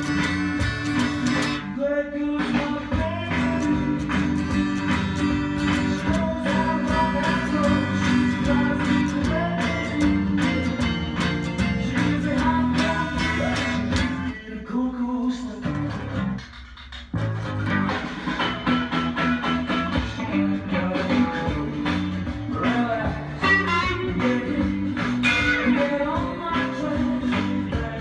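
Stratocaster-style electric guitar played along to a full-band recording of the song with singing. The music drops out briefly twice in the second half.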